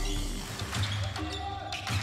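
A basketball bouncing on a hardwood court as it is dribbled, a few separate bounces, with held tones of music or a call in the background.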